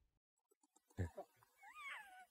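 About a second of silence, then faint short squeaky, gliding vocal cries from a man breaking into laughter.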